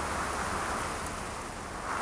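Wind blowing: a steady rushing noise that swells near the start and again at the end.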